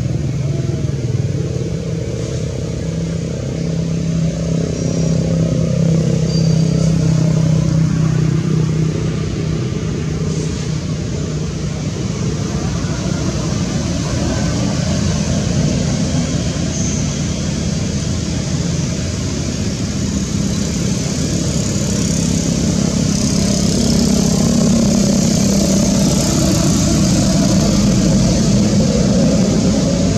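Steady, loud, low drone of a running motor-vehicle engine, swelling a little in loudness at times.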